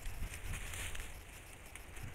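Faint rustling of tobacco leaves and stalks as they are handled and picked by hand, over a low rumble of wind on the microphone.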